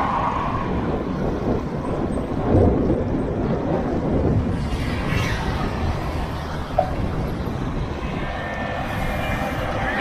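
Wind rushing over the microphone of a camera on a moving bicycle, with road traffic passing alongside; a vehicle swishes past about five seconds in.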